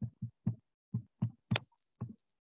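Handling noise from a wired earphone microphone being touched and adjusted: a string of short, dull knocks and rubs, with one sharper click about one and a half seconds in followed by a brief faint high tone.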